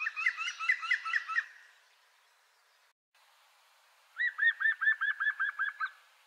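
European green woodpecker (Picus viridis) singing: a fast series of about eight ringing, whistled notes, then after a pause of a couple of seconds a second, even series of about ten such notes.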